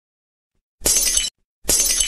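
An edited intro sound effect: two identical short, bright, hissy crashes, each about half a second long, the first about a second in and the second just under a second later.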